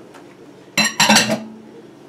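A stainless steel mixing bowl clinking twice in quick succession about a second in, each knock ringing briefly.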